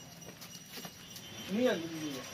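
Faint outdoor background with a few soft clicks, and one short call rising and falling in pitch about one and a half seconds in.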